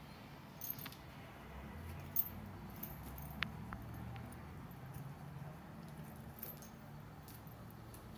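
Faint, scattered clicks and light jingling with some rustling as a cat rolls on a tile floor, grabbing and kicking at a feather wand toy; the jingle fits its collar tag.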